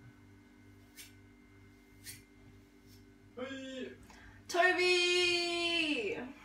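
A woman's voice holding sung notes: a short one about three and a half seconds in, then a louder long one near the end that sags slightly in pitch as it stops. Before that, two light clicks over a faint steady hum.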